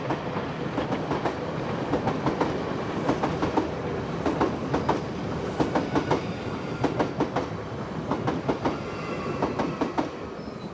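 A train running along the track: a steady rumble with a rapid, irregular run of wheel clicks and clacks over the rails.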